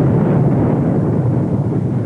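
Steady, low rumbling of a volcanic eruption cloud, a pyroclastic flow from a collapsed lava dome, pouring down the mountain.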